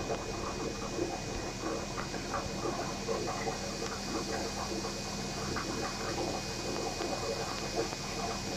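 Aquarium aeration bubbling: a steady run of small irregular bubbling and patter over a low steady electrical hum.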